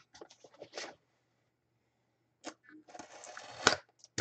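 Hands handling a cardboard collectibles box on a table: a few light taps and clicks, a quiet pause, then about a second of scraping as the box is slid across paper, ending in a sharp knock just before the end.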